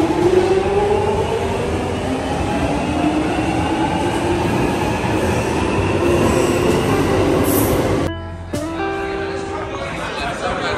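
London Underground train running, a loud rumble with a whine that slowly rises in pitch. About eight seconds in the sound drops suddenly to a quieter, steadier hum with a few held tones.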